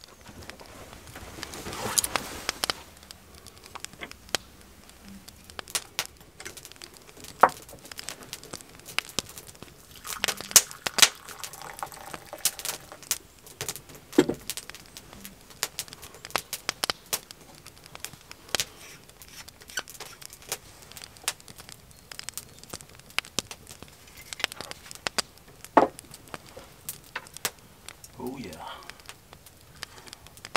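Wood fire crackling in a small fireplace, with irregular sharp pops and snaps throughout.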